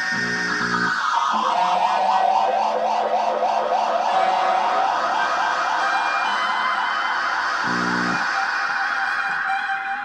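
Rock music with guitar, its dense tones wavering and sweeping in pitch.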